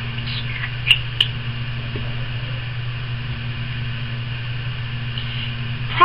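A steady low background hum in a small room, with two short faint clicks about a second in.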